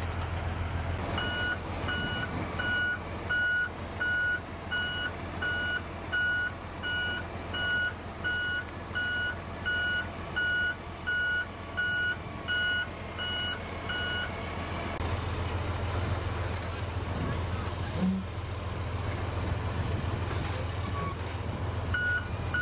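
Heavy military diesel engine running steadily under a high electronic backup alarm beeping about one and a half times a second. The beeping stops about two-thirds of the way through, the engine grows a little louder, and the beeping returns at the very end.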